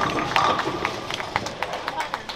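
Busy bowling centre: a quick, irregular clatter of sharp clacks from pins and balls on the lanes, over background voices.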